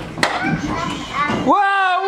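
Children's voices: a child talks, then about one and a half seconds in a child's voice holds a long, slowly falling note. Two sharp clicks sound at the very start as a wooden closet door is pulled open.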